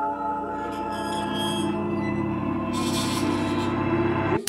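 Ominous suspense-music drone: low held tones with a gong-like ringing layer, sustained without a beat. A hissing high layer joins about two-thirds of the way through as the tension builds.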